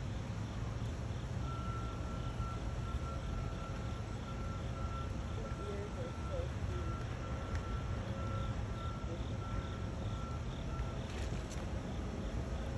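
Steady low background rumble with a thin, high steady tone sounding on and off through most of it.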